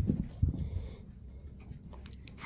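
A tennis ball bouncing on carpet and a Chihuahua's paws scampering after it: two soft low thumps in the first half-second, then quieter pattering.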